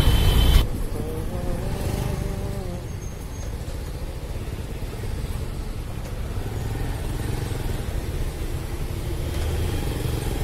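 Two-wheeler engine and road noise while riding in traffic, which cuts off abruptly under a second in. A quieter, steady rumble of street traffic follows, with a faint voice about one to three seconds in.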